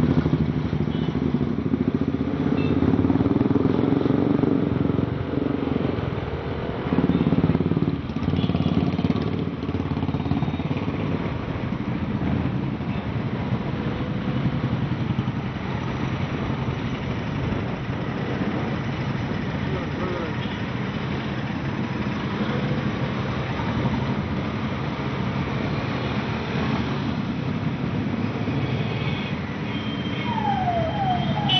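Several motorcycles riding slowly in a procession, their engines running with a steady low rumble, with a car engine among them.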